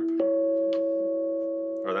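Steel tongue drum struck once with a soft mallet, about a fifth of a second in. A clear, higher-pitched note rings on steadily over a lower note still sounding from the stroke before.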